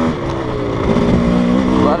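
GasGas enduro dirt bike engine running at a steady, moderate pace over rocky trail. It eases off briefly and picks up again about a second in.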